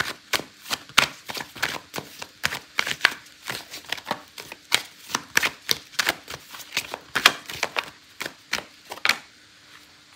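A deck of oracle cards being shuffled by hand, the cards slapping together in quick, irregular clicks, several a second, that stop about a second before the end.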